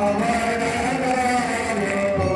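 Devotional aarti hymn being sung continuously over amplified music, with sustained voices.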